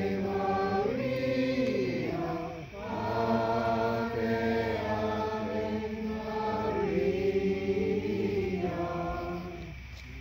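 A small group of voices singing a slow hymn in long held notes, with a brief break between phrases about three seconds in and again near the end.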